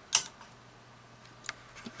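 Two sharp clicks about a second and a half apart, from handling a hard drive dock with a laptop SATA hard drive seated in it, over a faint steady low hum.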